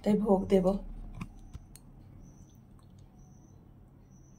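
A woman speaks briefly, then a few faint sharp clicks and a quiet stretch of room tone.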